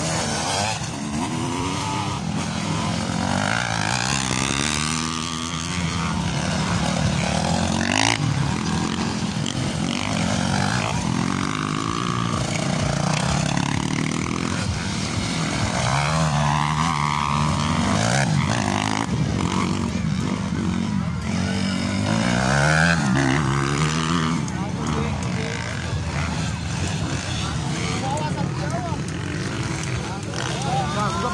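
150 cc class motocross dirt bikes racing past, their engines revving up and down in repeated rising and falling passes, with people's voices mixed in.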